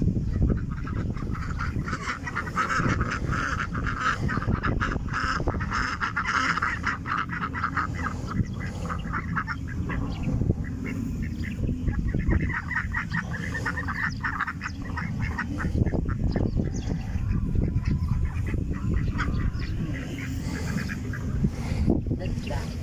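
A flock of white domestic ducks quacking rapidly and loudly, in two long runs: one starting a couple of seconds in, another about twelve seconds in.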